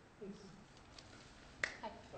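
A single sharp click about one and a half seconds in, just before a voice starts. A brief, faint voice sound comes near the start.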